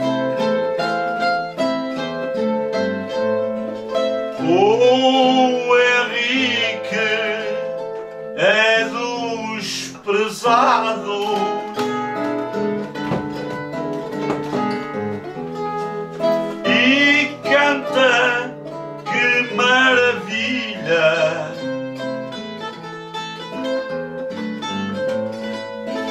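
Plucked-string accompaniment of a Portuguese guitar and an acoustic guitar playing the instrumental passage between improvised sung verses of an Azorean cantoria, with a steady chordal backing under a wavering higher melody that comes and goes several times.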